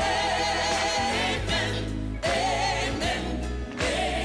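A choir singing music with long, held notes that waver in pitch over a steady low accompaniment.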